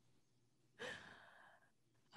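A person's short breathy sigh about a second in, set in near silence.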